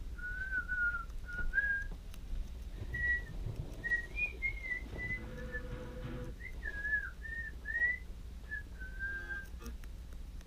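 A string of short, clear whistled notes, each wavering slightly and stepping up and down in pitch like a tune, with a few clicks near the end.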